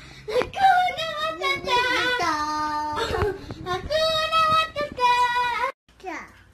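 Toddlers singing: a small child's voice holds long, drawn-out notes, with a second child as backing voice. The singing cuts off suddenly just before the end.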